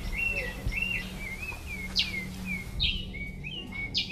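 Bird singing: a run of short, repeated chirps with a few sharper down-sweeping calls about two and three seconds in, over a steady low hum.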